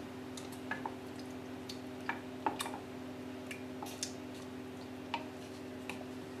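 Wooden spoon stirring thick peanut sauce in a stainless steel saucepan: irregular light clicks and soft squelches as the spoon knocks the pan and works the paste. A steady low hum runs underneath.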